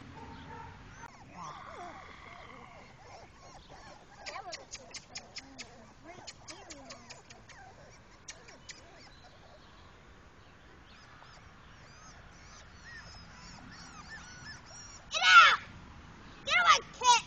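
Four-week-old English Pointer puppies whimpering and yipping faintly. There are bursts of rapid high chirps a few seconds in. Near the end a child gives a loud shout.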